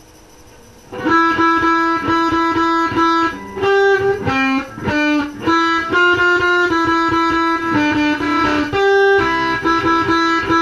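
Dean Vendetta 1.0 electric guitar played through a Crate GX-15 amp. A faint steady hiss comes first; then, about a second in, a fast run of single picked notes begins, one note struck rapidly over and over between changes to other notes.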